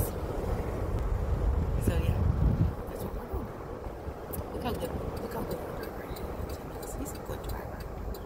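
Road and engine noise heard inside a moving car's cabin, a steady low rumble that drops noticeably about three seconds in. Faint low voices sit underneath it.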